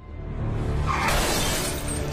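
Car glass shattering in a loud burst about a second in, as a body crashes onto a car, over a swelling dramatic film score with deep low notes.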